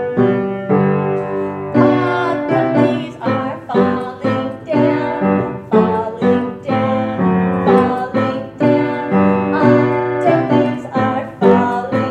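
Piano playing a children's song tune, with notes and chords struck a few times a second.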